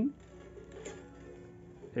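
Bandurria strings ringing faintly, several notes at once, set sounding by hands working a new string at the bridge. There is a light click with fresh notes about a second in, and the notes fade away.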